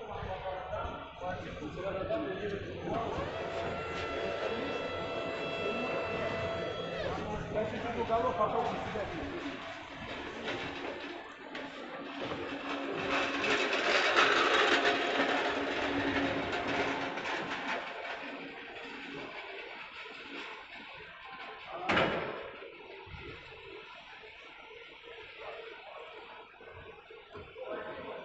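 Electric forklift hydraulics lifting a steel site cabin, with a steady pitched whine for a few seconds early on and a louder stretch of rushing noise in the middle. A single sharp bang comes near the end.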